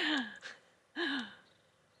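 A woman laughing: two short, breathy bursts of laughter about a second apart, each falling in pitch.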